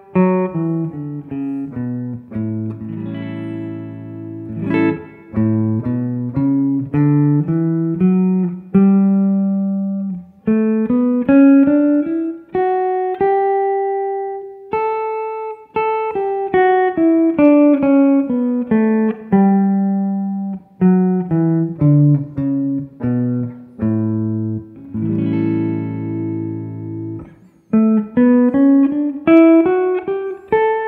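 Clean electric guitar playing the A Mixolydian scale (the A major scale with a flattened seventh, G natural) as single-note runs, climbing and falling through one position after another. Brief breaks come between positions, about ten seconds in and near the end.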